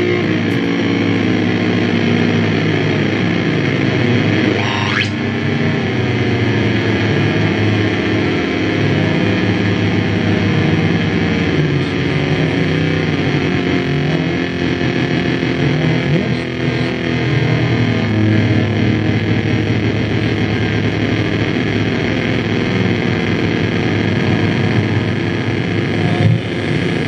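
Live harsh noise music from electronics and effects pedals through an amplifier: a loud, dense wall of distorted drone with wavering tones, and a rising sweep about five seconds in.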